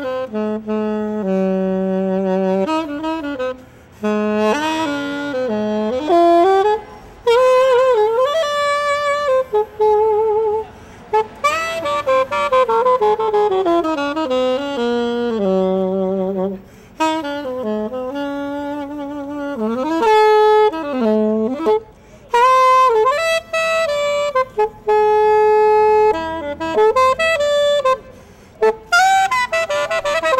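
Unaccompanied alto saxophone playing a jazz melody: a single line of held notes, slides and wavering vibrato, broken by a few short pauses.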